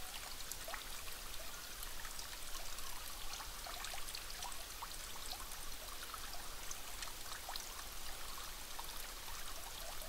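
Faint trickling water with many small drips scattered through a steady wash.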